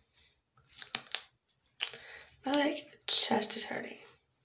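Short scraping and squishing handling sounds as a mascara wand is worked in and out of its tube, four or so brief bursts, mixed with short mumbled vocal sounds.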